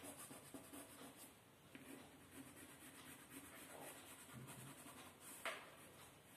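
Faint scratching of a coloured pencil shading on paper in repeated short strokes, with one sharper tap about five and a half seconds in.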